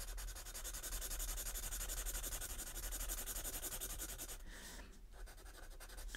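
Sharpie marker rubbing over sketchbook paper in quick back-and-forth strokes as it fills in a solid black area, dying away about four and a half seconds in.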